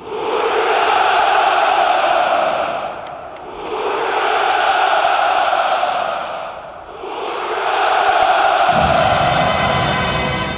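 Massed ranks of soldiers answering with the traditional three-fold "Ura!": three long drawn-out shouts in unison, each lasting about three seconds, with short dips between them.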